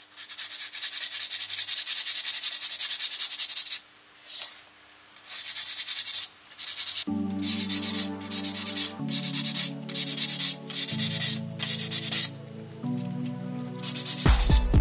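A 400-grit abrasive pad rubbed by hand over the dried stain on a sycamore bowl's rim, sanding it back with quick repeated scratchy strokes that pause briefly about four seconds in. About halfway through, background music with slow chord changes comes in under the sanding.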